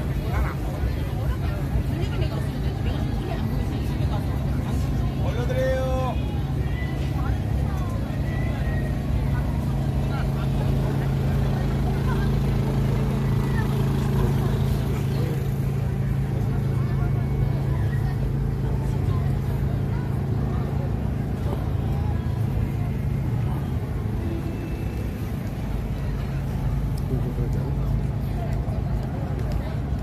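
Busy outdoor street-food alley: scattered voices of passers-by and diners over a steady low hum of traffic.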